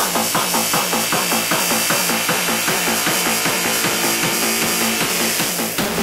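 Hardstyle dance music from a DJ mix in a breakdown with the deep bass and kick taken out, leaving a repeating synth pattern at about two and a half beats a second. Heavy bass comes back in right at the end.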